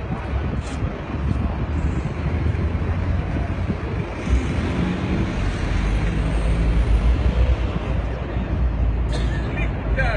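Busy city street noise: steady traffic rumble, heaviest in the second half, with indistinct voices mixed in.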